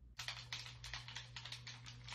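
Video game controller buttons being pressed rapidly, a quick run of sharp clicks several a second over a low steady hum.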